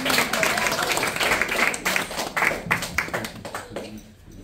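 A small group of children applauding by hand, a short round of irregular clapping that thins out and fades near the end.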